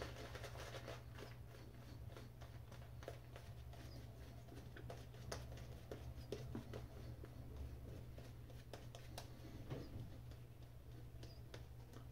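Faint scratchy swishing of a shaving brush working lather over a stubbled face, a run of many small crackles and rubs.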